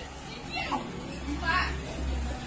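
Distant voices calling out in field footage, with the low steady rumble of a vehicle engine coming in about a second in.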